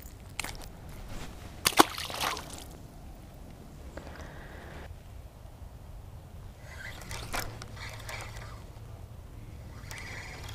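A small largemouth bass dropped back into a shallow creek, with one splash about two seconds in, followed by a few faint clicks from handling a spinning rod and reel.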